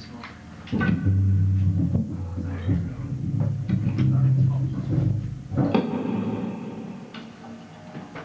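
Electric instruments played loosely between songs: low sustained notes through the amps, a few sharp knocks, and a ringing chord about six seconds in that fades away, with voices in the room.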